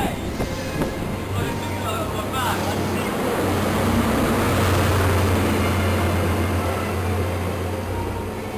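CrossCountry InterCity 125 high-speed train running through, its Mark 3 coaches rolling by over the rails. A steady low diesel drone from the rear power car is loudest about halfway through and eases slightly near the end.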